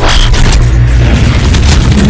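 Loud, deep cinematic boom with a sustained low rumble under music: a trailer-style sound effect.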